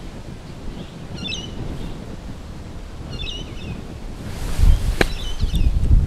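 A golf club striking bunker sand on a bunker shot: a single sharp hit about five seconds in. Wind buffets the microphone, growing louder shortly before the strike, and a bird chirps twice.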